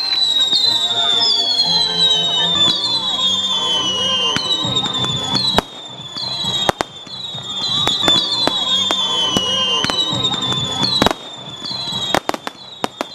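Fireworks going off: a quick run of whistling fireworks, about one whistle a second, each falling in pitch, with sharp bangs and crackles among them and two louder bangs, one past the middle and one near the end.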